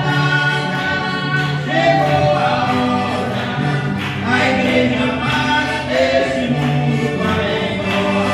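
A gospel song sung by a woman and a man to piano accordion accompaniment, with long held notes over a steady accordion bass.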